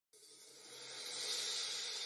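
A hiss that swells steadily louder from silence, like an electronic noise riser building into the start of a song.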